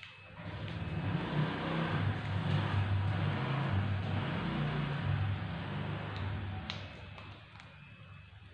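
A motor vehicle's engine passing by, building up about half a second in and fading away near the end.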